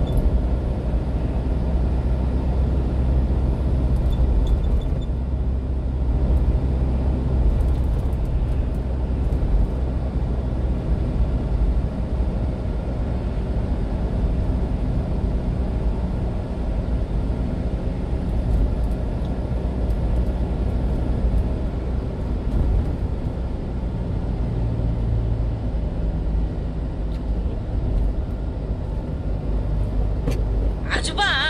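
Engine and road noise of a 1-ton refrigerated box truck cruising, heard steadily from inside the cab.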